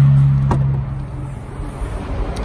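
A single sharp click about half a second in as the tailgate latch of a Kia Sportage releases and the hatch is opened. It is heard over a steady low hum that fades out about a second in.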